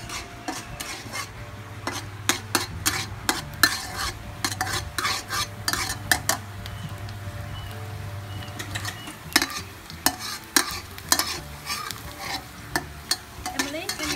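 Metal spatula scraping and clinking against a steel wok, in irregular bursts of strokes, as chopped garlic is stirred in oil. Under it the garlic is sizzling gently in oil that is only beginning to heat.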